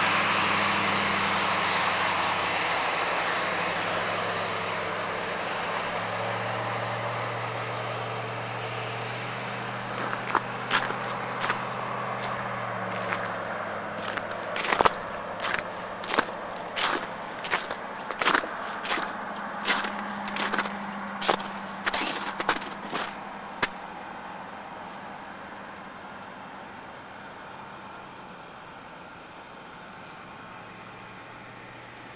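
A vehicle passing on the wet road, its tyre hiss and engine hum slowly fading as it goes away. From about ten seconds in, for some fourteen seconds, footsteps crunching on sleet-crusted snow, about two steps a second.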